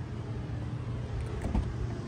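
A low, steady rumble with a single dull knock about one and a half seconds in.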